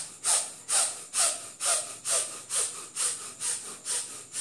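A man breathing in and out fast and forcefully, about two sharp breaths a second in an even rhythm, deliberately pushing his breathing rate up.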